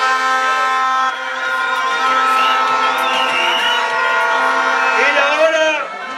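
Rally crowd blowing horns: many steady horn tones sounding together at different pitches, with a wavering higher tone about two seconds in. A voice shouts about five seconds in.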